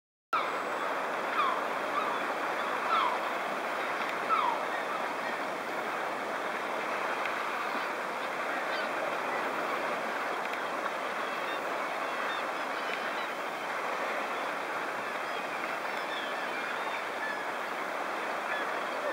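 Sea swell washing and breaking against a rocky cliff base, a steady rushing wash of surf, with a few short, falling seabird calls in the first few seconds.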